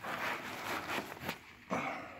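Bubble wrap and cardboard packaging rustling and scraping as a tightly packed photo is worked out of its mailer, with a brief louder rustle near the end.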